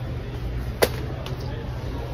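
A single sharp click a little before the middle, over a steady low background hum.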